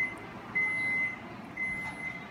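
An electronic beeper sounding a steady high-pitched beep about once a second, each beep lasting about half a second.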